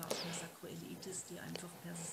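A pause in a woman's talk: a faint intake of breath at the start, then quiet room sound over a low steady hum.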